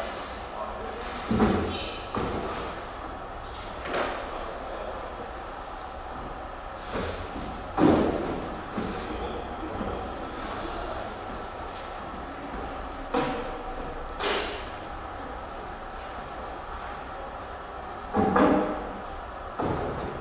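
Scattered knocks and clunks of brewing containers and equipment being handled, about seven in all, the loudest about eight seconds in, over indistinct chatter of people in the room.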